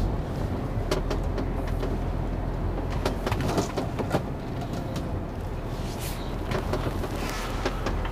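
Lorry's diesel engine running steadily at low speed during a slow manoeuvre, heard from inside the cab, with scattered clicks and a few short hisses.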